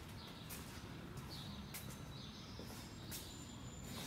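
Quiet shop room tone with a low hum, a few short faint high chirps and light clicks.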